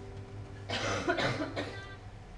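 A person coughing, a short harsh run of coughs about a second in, as quiet background music fades out.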